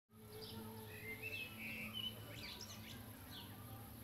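Small birds chirping intermittently, with short falling whistles and twitters, over a low steady background hum.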